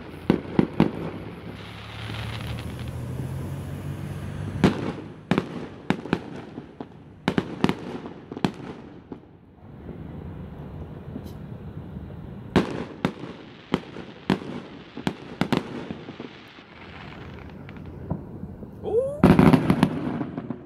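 Fireworks going off: clusters of sharp bangs and crackles, with quieter gaps between the volleys.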